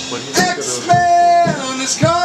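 Full-band rock recording playing back over studio monitor speakers: a long held sung note that slides in pitch, over drums.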